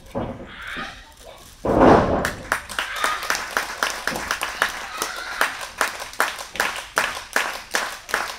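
A loud, deep thud in the wrestling ring about two seconds in, a wrestler going down onto the ring mat. It is followed by the audience clapping in a steady rhythm of about three claps a second, with a wrestler's shout over it.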